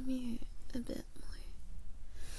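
A woman's soft, close-miked voice: a short hummed murmur at the start, then a brief breathy whispered sound about a second in.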